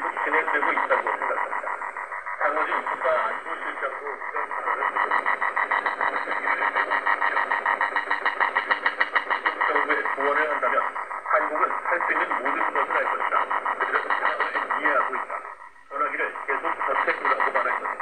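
Shortwave Voice of America Korean broadcast on 9405 kHz, played through a small portable receiver's speaker and buried under North Korean jamming: a loud, rapid, steady pulsing buzz with the program's speech faintly audible beneath it. The signal drops out briefly near the end.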